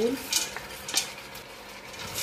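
Split fava beans poured into a stainless steel pot of vegetables frying in olive oil: two short clattering pours over a steady sizzle, then a wooden spatula stirring them in.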